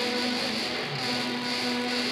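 Low brass quartet of two tubas and two euphoniums playing a metal-style piece, with several parts holding overlapping sustained notes.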